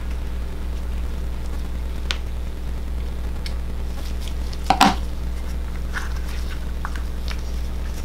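Steady low hum with a few faint clicks and one short, louder snip or rustle about four and three-quarter seconds in, from small scissors cutting and gloved hands handling leathery ball python eggs over vermiculite.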